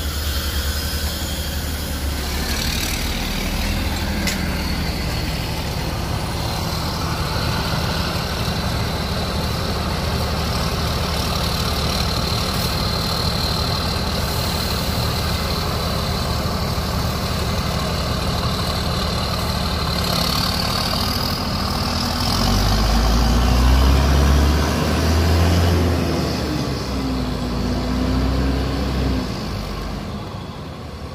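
Sudiro Tungga Jaya intercity coach's diesel engine running as the bus moves slowly past at close range. About three quarters of the way through the engine grows louder with a deeper rumble and a rising and falling pitch, then drops away near the end.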